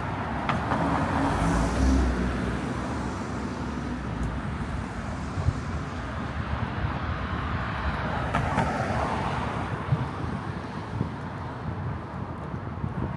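City street traffic: cars driving past on the road, one passing close and loudest about two seconds in, another going by near the end. Steady traffic noise underneath.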